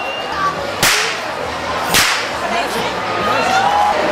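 Long whip swung overhead, cracking loudly twice about a second apart, with crowd chatter underneath.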